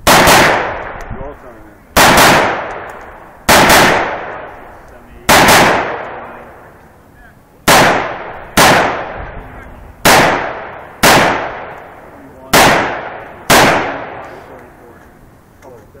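Rifle firing about eleven single shots at an uneven pace of one every one to two seconds, two of them in quick succession, each loud report trailing off in about a second of echo.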